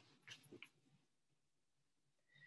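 Near silence with three faint, short sounds about half a second in, from a pet cat in the room.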